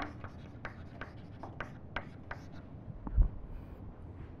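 Chalk writing on a chalkboard: quick, uneven taps and scratches of the chalk, stopping about two and a half seconds in. A dull low thump follows near the end, the loudest sound.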